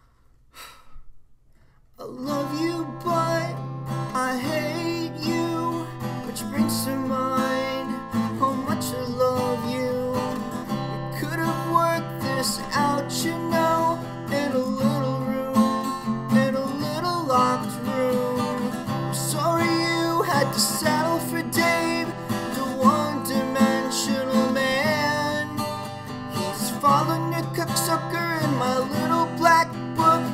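Acoustic guitar strumming chords, starting about two seconds in. This is the song's instrumental opening before the vocals come in.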